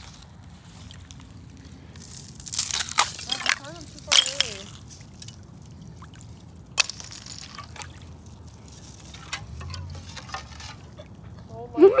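Water splashing and sloshing as pieces of ice are handled and dropped in the water, loudest about three seconds in, with a sharp knock about seven seconds in.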